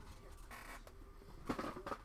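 An office chair squeaks and creaks as someone gets up out of it, with faint rustling of movement. The loudest squeaks come near the end.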